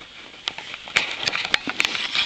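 Magazines and books rustling and tapping as a baby pulls them off a low shelf: a quick run of light paper rustles and small knocks, starting about half a second in and getting busier.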